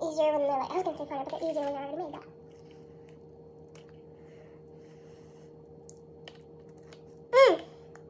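A girl's wordless vocalizing, high-pitched from the sped-up footage, for the first two seconds, then a quiet stretch with a few faint clicks, and a short vocal sound falling in pitch near the end. A steady low hum runs underneath.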